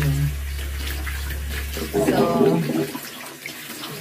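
Water tap running into a bathroom sink as lathered hands are rubbed and rinsed under the stream, washing the soap off.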